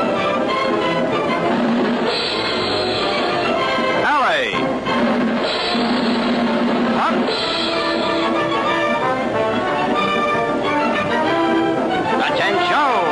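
Brass-and-drums band music with sustained notes, broken by sweeping slides in pitch about four seconds in and again near seven seconds.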